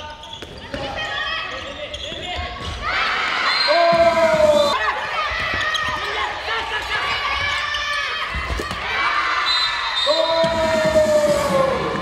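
A handball being bounced and thrown on a sports hall's court, short knocks echoing in the large hall. Voices call and shout over it, twice rising into a loud, long drawn-out call, about four seconds in and again near the end.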